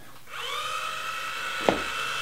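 Small electric motor of the coop door's winch whining: it spins up with a short rise in pitch, then runs steadily. A single sharp click comes about a second and a half in.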